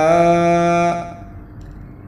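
A man chanting a Sundanese nadhom (devotional verse) unaccompanied, holding the last note of a line for about a second before it fades into a short pause between lines.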